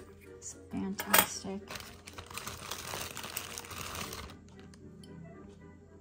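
Small metal trinket box clinking and knocking as it is handled and put down, followed by about two seconds of rustling from the packing material in the parcel, over soft background music.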